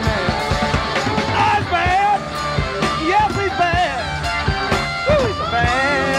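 Live rock band playing: an electric guitar lead with bending notes over drums and bass.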